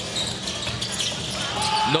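Steady crowd noise in a basketball arena during live play, with a ball being dribbled on the hardwood court. A brief steady tone sounds near the end.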